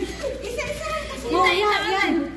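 Several women's high-pitched voices calling out and chattering playfully over a low steady hum.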